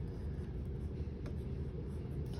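Faint scratching of a pencil writing on lined notebook paper, over a low steady background rumble.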